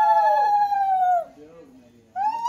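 A conch shell blown in one long, steady, horn-like note that sags and slides down in pitch as the breath runs out, stopping a little over a second in.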